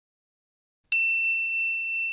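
Silence, then about a second in a single high bell-like ding that keeps ringing at one pitch.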